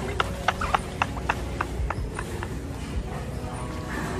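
A run of sharp clicks, about three a second, fading out about two and a half seconds in, over a steady background hum.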